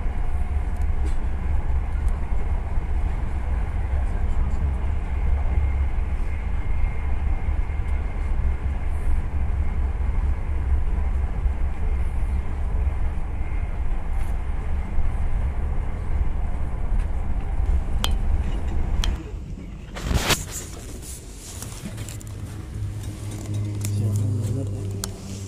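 Steady low rumble of a moving train heard from inside the carriage. A short sharp noise comes about twenty seconds in, and the sound is quieter after it.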